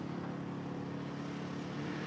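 Quad bike engine running with a steady drone.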